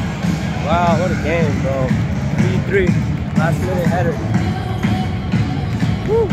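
Background music: a song with a steady, pulsing beat and sung vocals.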